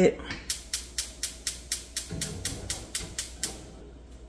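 Gas range spark igniter clicking rapidly, about four clicks a second for some three seconds, as a burner is lit.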